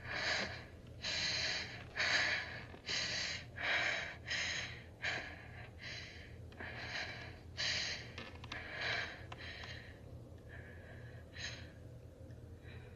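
A woman's heavy, frightened breathing: quick panting with sharp gasps, about one or two breaths a second, easing off near the end, over a low steady hum.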